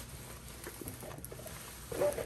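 Faint rustling of a large rolled diamond painting canvas being unrolled and handled, over a low steady background hum.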